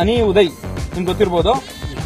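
A man speaking into reporters' microphones, with music playing under the voice.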